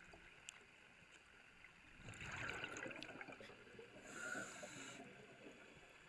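A diver breathing underwater: a rush of exhaled bubbles about two seconds in, then a hissing in-breath about four seconds in.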